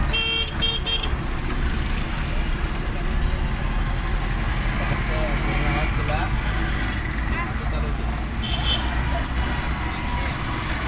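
Road traffic heard from a moving vehicle: a steady low engine and road rumble, with a quick series of short horn toots about half a second in and another brief horn beep near the end.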